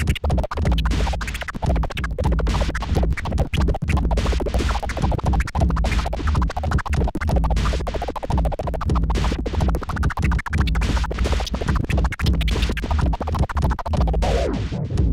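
Vinyl record scratched by hand on a DJ turntable in rapid, choppy cuts over a bass-heavy backing.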